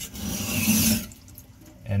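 A kitchen knife blade stroked along a wet silicon carbide sharpening stone, a gritty scraping that stops about a second in. Water trickles onto the stone.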